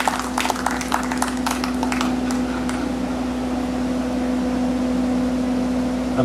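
Scattered hand claps from an audience thin out over the first couple of seconds. Under them runs a steady low hum, likely from the stage sound system.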